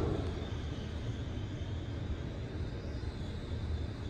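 ThyssenKrupp scenic traction elevator car travelling in its hoistway, heard from inside the glass car: a steady low rumble with a faint high whine over it.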